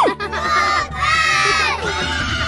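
Celebration sound effect: a short falling swoop, then a group of children cheering together for about a second.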